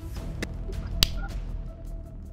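A coin flicked off a thumb and slapped down onto the back of a hand: two short clicks about half a second apart, the second louder.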